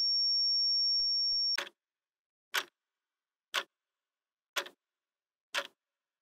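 A high-pitched steady electronic beep that cuts off suddenly about a second and a half in, then a clock ticking, one sharp tick each second.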